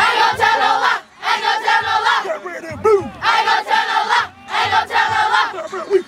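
A huddle of youth football players shouting a team chant in unison. The chant comes in repeated phrases of about a second each, with short breaths between them.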